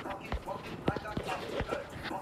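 A series of sharp knocks or taps at uneven intervals, about five in two seconds, with voices faint underneath.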